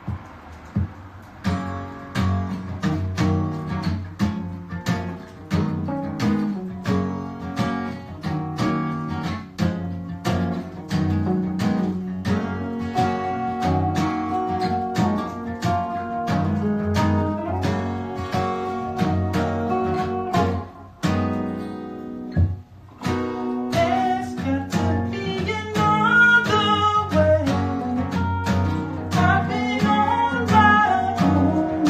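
Acoustic guitar and electric guitar playing a song together, with even strummed chords starting about a second and a half in. A melody line that slides in pitch comes in over the strumming near the end.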